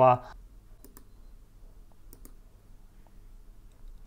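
A few faint computer-mouse clicks, coming in pairs about a second in and again a little after two seconds, over a low steady room hum.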